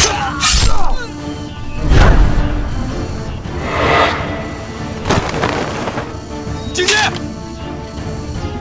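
Dramatic film score music with several sharp impact sound effects (hits and cracks) laid over it, the loudest near the start and about two seconds in.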